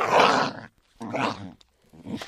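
Small dog snarling in complaint: two rough snarls, the first and loudest lasting about half a second, the second coming about a second in.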